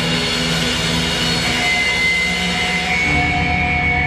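Loud live rock band with distorted electric guitars holding sustained, droning notes, and a regular low pulse of bass and drums coming in about three seconds in.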